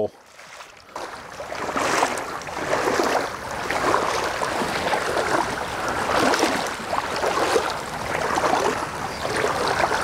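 Legs in waders wading through shallow floodwater, a swishing and splashing that swells with each stride, roughly once a second.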